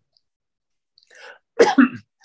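A man coughs once, with a short voiced burst near the end, after about a second of quiet.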